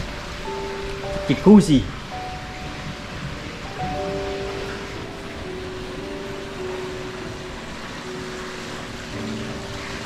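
Soft background music of slow, held notes, over a steady rush of water from the pool.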